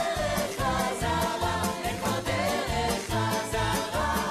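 A live band, with drums, bass and keyboards, plays a song while a singer sings the lead, and the audience claps along. A steady beat pulses about twice a second.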